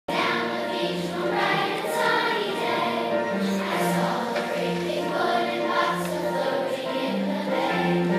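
Large children's choir singing a song together.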